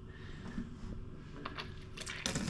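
A few light clicks from a boiling-water kitchen tap's mechanism about one and a half seconds in, over a faint steady hum, just before the tap starts to dispense.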